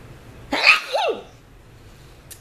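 A woman sneezing once into her hand: a sharp burst about half a second in, followed by a short voiced tail that rises then falls.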